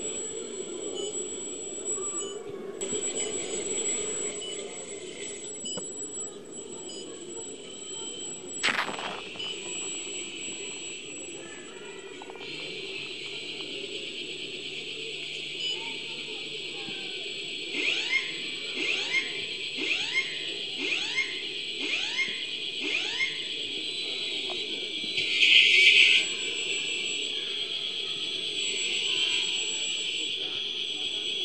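High-pitched electric whine of radio-controlled model boat motors heard underwater, jumping abruptly in level several times as the throttle changes. About two-thirds through comes a quick series of about eight falling chirps, and near the end a short loud burst.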